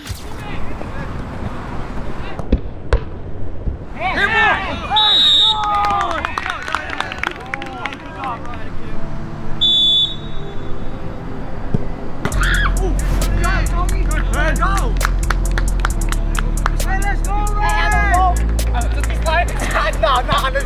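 Background music with a sung vocal; about twelve seconds in, a heavy bass line and a fast, even drum beat come in.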